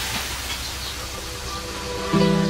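Steady hiss of water spraying from a hose as pigs are washed, under faint background music.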